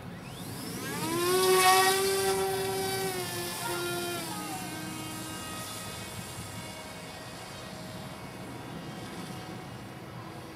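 Motor and propeller of a PremierRC V Wing Box radio-controlled kite plane whining as it throttles up for takeoff. The pitch rises over the first second or so, then holds steady and fades as the plane climbs away.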